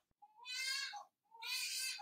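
A baby crying in the background: two short wails about a second apart.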